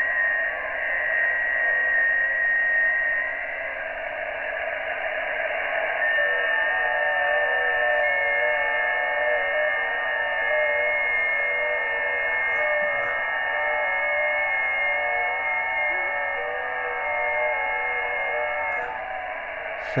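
Shortwave receiver audio from a Xiegu G90 HF transceiver tuned to the 20-metre FT8 frequency: hiss limited to the voice band, with several FT8 digital signals sounding as steady tones that step slightly in pitch. One set of signals fades a few seconds in, and a new set starts about six seconds in and stops together about thirteen seconds later, the timed transmit slots of FT8.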